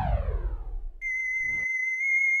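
Electronic sound effects: a falling sweep fades out, and about a second in a steady, high synthesized tone starts and holds.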